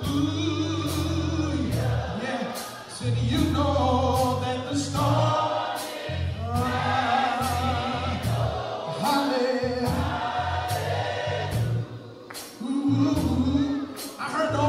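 Gospel music: a choir singing over a bass line and a steady drum beat.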